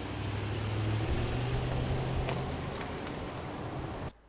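Large V8 SUV driving past on a street: low engine rumble with tyre and road noise, swelling about one to two seconds in.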